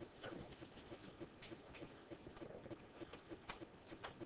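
Faint room tone with a quick, even ticking, about four ticks a second, and a few scattered sharper clicks.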